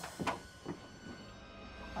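Quiet, low background music drone under a brief startled "ah!" near the start, followed by a faint click about half a second later.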